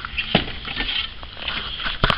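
Handling noise of objects being shifted about in a box: rustling and light clatter, with one short knock about a third of a second in.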